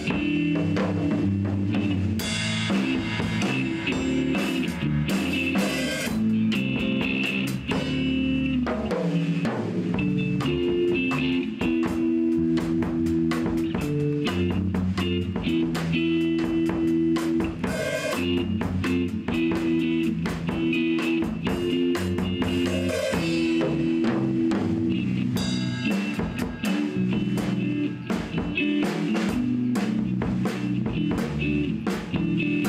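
Live rock band jamming: drum kit keeping a steady beat under electric bass and electric guitar played through amplifiers.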